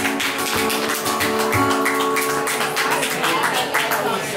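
Live acoustic and electric guitars playing sustained chords that change a couple of times, while a few people clap along with sharp, separate claps.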